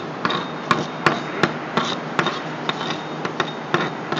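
Steel chipping hammer knocking slag off a freshly laid stick weld on steel plate, sharp metal knocks at about two to three a second.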